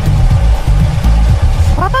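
Cartoon sound effect of a car driving, a steady engine-and-road rumble with a hiss over it, mixed with background music.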